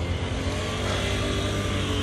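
A motor vehicle engine running with a steady, unchanging pitch, over general street noise.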